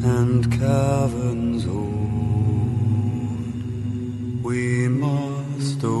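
Song with deep male voices humming a steady low drone, and sung phrases gliding over it near the start and again in the second half.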